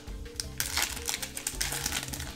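Foil wrapper of a Yu-Gi-Oh! booster pack crinkling and crackling in scattered ticks as it is torn open by hand. Background music with held notes runs underneath.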